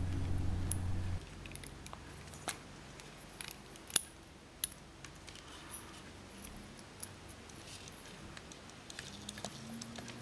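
Faint, scattered clicks and taps of fingers working a rubber band onto a plastic servo pulley and handling nylon cord, the sharpest about four seconds in. A low steady hum sounds for about the first second, then stops.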